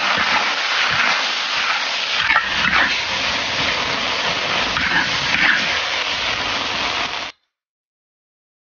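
Youmai cai greens sizzling in hot oil in a wok, stirred and scraped with a metal spatula. The steady sizzle cuts off abruptly about seven seconds in.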